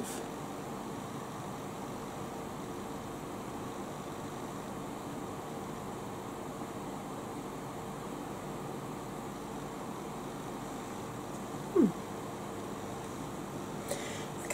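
Steady background hiss with a faint steady hum underneath, and one brief falling vocal murmur from a person near the end.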